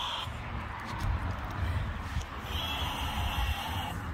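Small battery motor of a toy bubble gun whirring with a steady high whine when the trigger is pulled: once briefly at the start, then again for over a second in the second half. A low rumble runs underneath.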